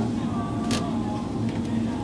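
Steady low electrical hum of shop background, with one brief soft hiss about three-quarters of a second in.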